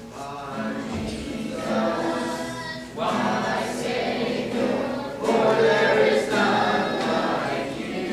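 A youth choir singing a worship song together, the phrases swelling louder about three seconds in and again a little after five seconds.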